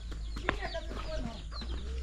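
Chickens clucking softly, with a few light knocks and faint voices in the background.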